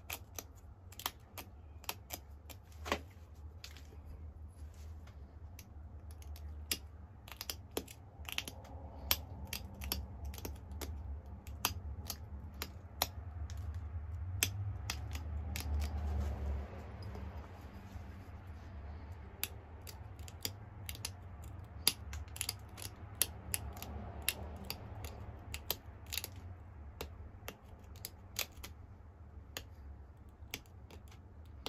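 Pressure flaking the edge of a Flint Ridge flint point with a hand-held flaker: a run of sharp, irregular clicks and snaps, a few a second, as small flakes pop off the stone. A low rumble runs underneath and swells midway.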